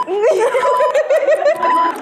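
A woman laughing in a quick, wavering run of giggles. A short steady beep sounds about once a second.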